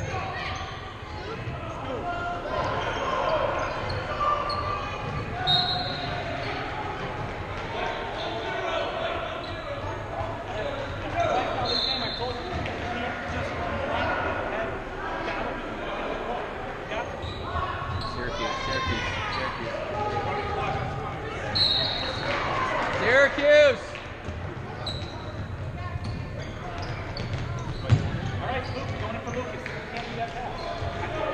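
Youth basketball game in a large gymnasium: a basketball bouncing on the hardwood court, short high sneaker squeaks, and players and spectators calling out, all echoing in the hall. A few louder shouts stand out about two-thirds of the way through, and there is one sharp knock near the end.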